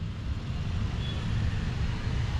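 Steady low rumble with a faint even hiss above it: general background noise with no clear single source.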